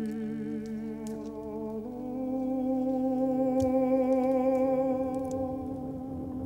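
Background music of a wordless humming voice holding long notes with a slight waver, stepping up to a higher note about two seconds in.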